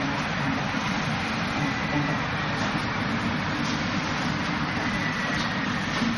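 A steady, even background rush fills the whole clip. Over it come about three faint knocks of hands striking the wooden arms of a Wing Chun wooden dummy, spread through the clip.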